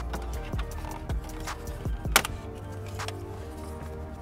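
Background music with steady held notes, over a few sharp plastic clicks, the loudest a little past two seconds in: the clips of the radio surround trim panel popping free as it is pulled off the dash.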